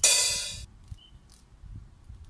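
A single loud metallic clang that rings and fades within about half a second.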